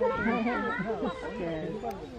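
Several people's voices, children among them, talking over one another.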